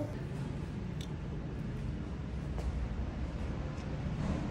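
Low steady room hum with a few faint light clicks.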